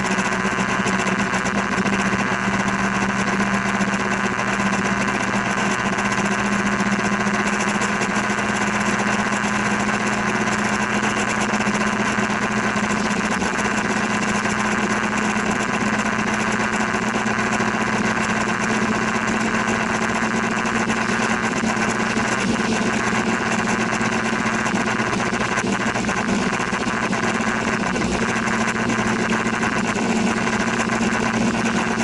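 Scooter engine running at a steady pitch while riding, with a constant hiss over it.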